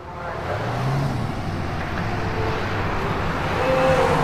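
A steady rushing noise with a low hum underneath, like passing road traffic; the hum rises briefly about a second in.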